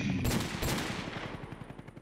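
A burst of rapid automatic gunfire, a fast and even string of sharp reports that starts abruptly and dies away over about two seconds.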